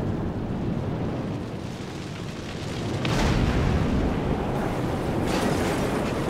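Deep roiling rumble of a nuclear test explosion, the thunder that follows the shockwave, swelling louder about three seconds in. It is throbbing, the kind of sound felt in the whole body.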